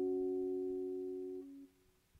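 Yamaha Montage M6 synthesizer preset sounding a held chord that slowly fades. Its notes cut off about one and a half seconds in, the lowest note last.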